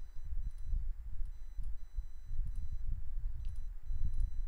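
Low, uneven rumble of microphone background noise, with faint high-pitched electronic tones that come and go and a few soft mouse clicks.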